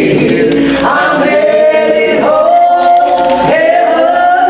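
Two women singing a gospel song together, with a long held note in the middle.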